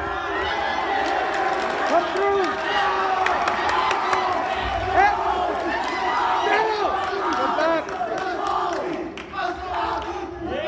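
A crowd of spectators and teammates shouting and cheering, many voices yelling over each other at once.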